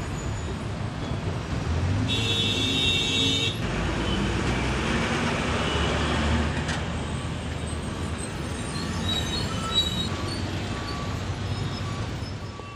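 Street traffic noise, steady throughout. About two seconds in, a vehicle horn sounds for roughly a second and a half.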